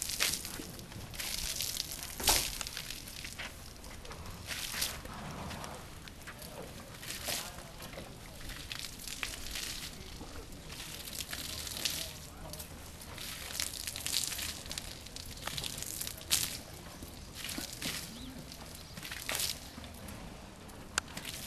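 Water sloshing and splashing in irregular bursts as a horse is sponged down from a bucket, with a couple of sharp knocks.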